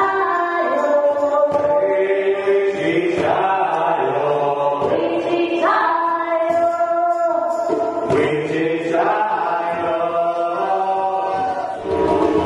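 Group vocal chanting: several voices sing long held notes together, moving to a new pitch every couple of seconds.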